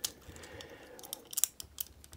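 Plastic arm of a Transformers The Last Knight Berserker action figure being pressed and snapped onto its shoulder joint: faint plastic handling, with a click at the start and a quick run of small clicks from about a second in.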